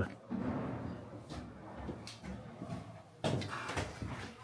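A wooden door being handled, with a sharper knock or clatter a little after three seconds in, over faint voices and rustling.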